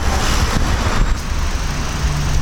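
Wind buffeting the microphone as the camera moves along a busy road, over the steady noise of passing cars and vans.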